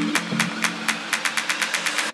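Electronic music build-up: short percussion hits that come faster and faster, over low held notes that drop away about halfway through.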